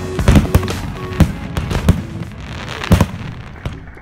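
Fireworks display: a run of sharp bangs from aerial shells bursting, the loudest about three seconds in, easing off toward the end.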